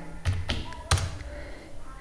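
Three separate keystrokes on a computer keyboard, spread over about the first second, as a short word is typed.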